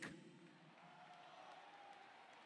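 Near silence: faint hall room tone as a spoken phrase ends, with a brief echo of the voice at the very start.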